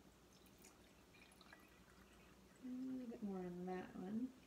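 Water being poured from a glass pitcher into a glass: faint trickling with small drips and splashes. From about two and a half seconds in, a woman's wordless voice sounds over it and is the loudest thing.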